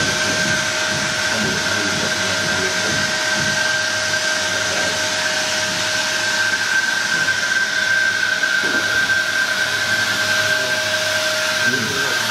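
AIROFOG U260 electric insecticide fogger running steadily while spraying mist: a steady high motor whine over a loud hiss of blown air.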